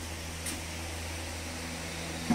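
A steady low hum under an even hiss, with one faint tick about half a second in.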